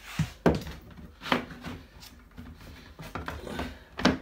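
Handling noise as the camera is swung about: three sharp knocks, the loudest about half a second in, with rubbing and rustling between them.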